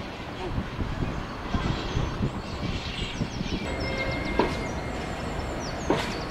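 Diesel freight locomotive running past hauling a rake of covered hopper wagons: a steady rumble of engine and wheels on rail, with a couple of knocks from the wagons near the end and short high squeals and a thin held tone in the second half.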